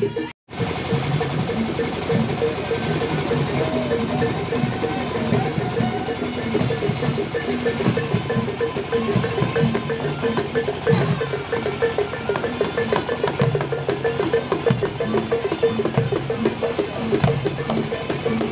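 Javanese Barongan procession ensemble playing: hand-held knobbed gongs ring in a steady repeating pattern over a hand drum and a bass drum. The audio drops out briefly just after the start, then the playing runs on without a break.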